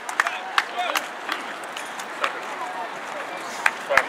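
Scattered, irregular handclaps and hand slaps from players, over indistinct chatter of several voices.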